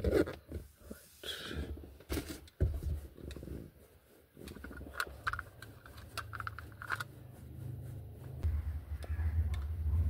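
Irregular plastic clicks, scrapes and rubbing from a suction-cup car phone holder being handled and pressed against the dashboard close to the microphone.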